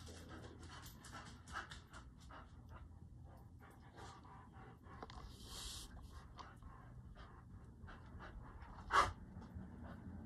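Fine-tip ink pen drawing quick short strokes on a paper tile: a run of faint scratchy strokes several a second, with a longer rasp a little after five seconds and a sharper tap about nine seconds in, the loudest sound.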